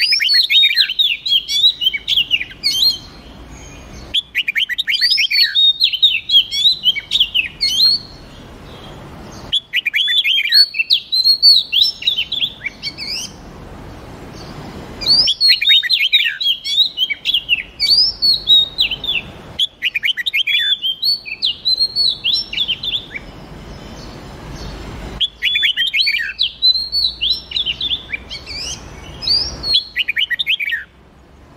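Songbird singing in six phrases of rapid, high chirping and whistled notes, each about three to four seconds long, with short pauses between them.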